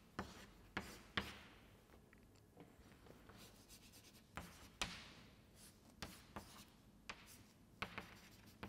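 Faint chalk writing on a chalkboard: irregular sharp taps and short scratchy strokes as a chemical structure is drawn.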